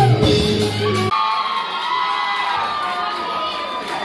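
A live band of drums and electric guitars ends its song about a second in, and an audience cheers and whoops.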